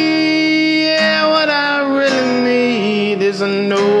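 Acoustic guitar strummed about once a second under a long held sung note that drops in pitch and wavers about three seconds in.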